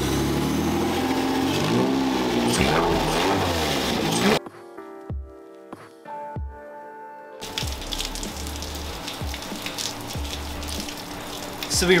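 Porsche 996 flat-six engine running steadily, with small changes in pitch, while the throttle body is worked by hand; the throttle body is not returning fully closed, which is put down to a misrouted throttle cable. About four seconds in the engine sound cuts off suddenly. A short stretch of music with held tones follows, then rain with low pulsing music tones.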